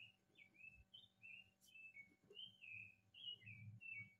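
Near silence with faint, high-pitched bird chirps in quick succession, about three or four a second, each a short glide up or down in pitch.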